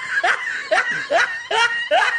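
A person laughing in a quick run of short, high, rising laughs, about five of them in two seconds.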